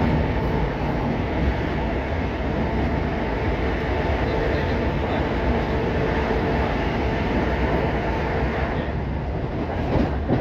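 Inside the carriage of a Class 319 electric multiple unit running at speed: a steady rumble of wheels on rail and running noise. A faint steady whine joins in about four seconds in and fades near the end.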